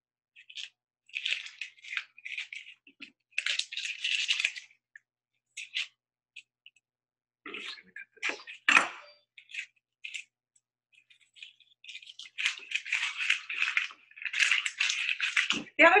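Dry, papery onion skin being peeled off by hand, crackling and rustling in irregular bursts. A chef's knife knocks once on a wooden cutting board about halfway through. The call audio cuts to dead silence between sounds.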